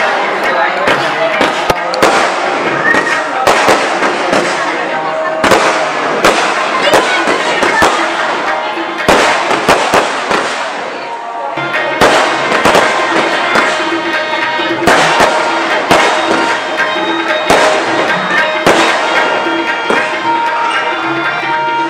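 Fireworks going off in a rapid, irregular series of sharp bangs and crackles, with a short lull about ten seconds in.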